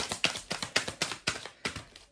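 A tarot deck being shuffled by hand, the cards tapping and slapping together in quick, even clicks about four times a second.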